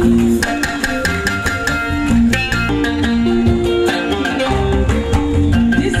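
Live band music without singing: plucked guitar lines over bass and drums.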